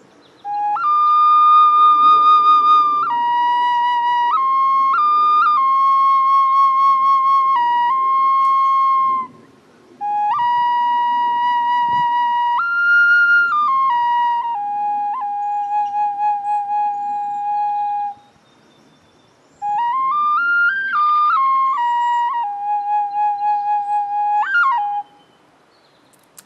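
Custom wooden pocket flute tuned to G sharp at 432 Hz, playing a slow melody of long held notes in three phrases with short pauses between them. About twenty seconds in comes a quick run of rising notes, and the last held note wavers with vibrato before a short upward flick at the end.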